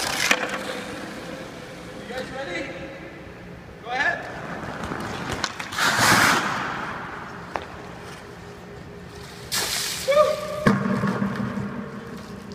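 Hockey skates stopping hard on rink ice, each stop scraping up a short spray of snow, about four times with the loudest a little past the middle.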